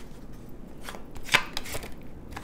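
Tarot cards being handled, with a few sharp taps against a hard stone countertop, the loudest a little past halfway.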